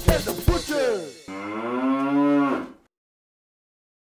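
Music with drum hits, then a single long cow moo as a sound effect, which cuts off abruptly.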